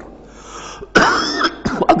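A man coughs once to clear his throat: a sudden, short sound about a second in, lasting about half a second, followed by a couple of small clicks.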